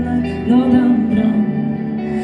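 Live pop song: a woman singing into a microphone over electric guitar and band, amplified through a PA system.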